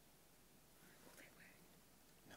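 Near silence: room tone, with a faint whispered or murmured voice off-microphone about a second in.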